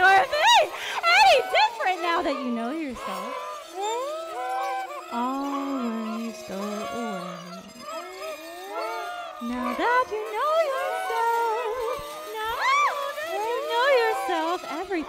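Wordless improvised vocalizing into a microphone, the voice sliding and bending in pitch without words, over a steady held electronic tone.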